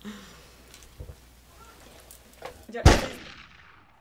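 A single loud boom-like impact about three seconds in, with a long fading tail: a transition sound effect. Before it there is only faint studio room tone.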